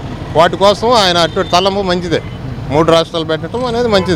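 A man speaking in a street interview, with traffic noise behind the voice.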